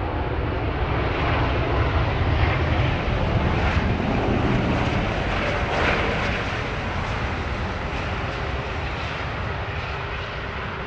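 Jet engine noise from a British Airways Airbus A380's four Rolls-Royce Trent 900 engines as the airliner rolls past on the runway, a deep rumble with a hiss on top. It is loudest a few seconds in and slowly fades as the aircraft moves away.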